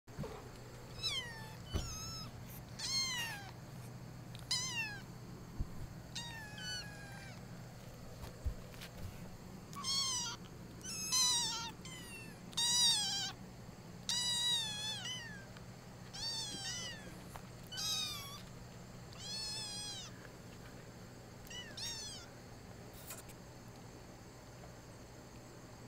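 Young kittens meowing repeatedly, about fifteen short high calls with pauses between, each one falling in pitch. The calls are loudest about halfway through.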